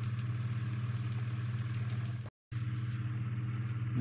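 A steady low hum that cuts out completely for a split second just past halfway, then resumes unchanged.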